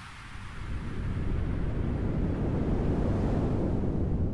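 A deep rumbling noise, like surf or wind, swells up within the first second and then holds steady while a high hiss fades out. It is the sound effect of an animated logo sting.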